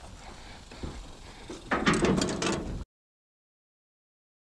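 Pickup truck door being opened and shut, a short cluster of knocks and rattles a little under two seconds in, over faint outdoor noise. The sound cuts off suddenly three-quarters of the way through.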